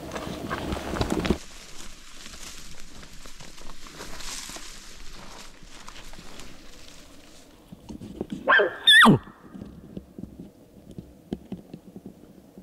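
A single short bull elk bugle about eight and a half seconds in: a high whistling call that climbs and then drops off sharply. Before it, soft footsteps and brushing through forest undergrowth.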